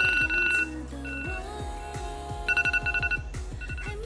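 Telephone ringing in fast trilling bursts, loudest at the start and again past the halfway mark, over background music with deep bass drum hits that drop in pitch.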